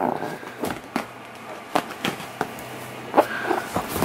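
A few scattered light knocks and rustling handling noises from an inflated rubber glove being hugged and squeezed, over a faint steady low hum.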